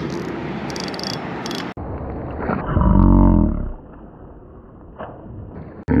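A steady rushing noise that stops abruptly just under two seconds in, then a man's loud, drawn-out yell about three seconds in, as a hooked tarpon breaks off the line.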